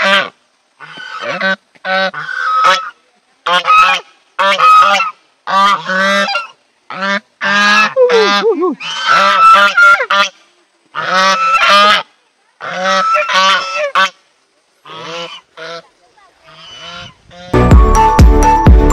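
Domestic geese honking: loud, repeated calls one after another with short silent gaps, fainter near the end.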